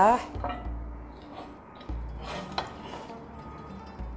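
A few light knocks of raw chicken pieces being set down and shifted by hand in a metal pan on the hob, over faint background music.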